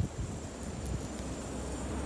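Snowstorm wind buffeting the microphone: a steady low rumble with a faint hiss, after a short thump right at the start.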